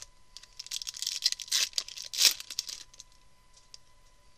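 Foil wrapper of a baseball card pack crinkling and tearing as it is ripped open by hand: a run of sharp crackles, loudest a little over two seconds in.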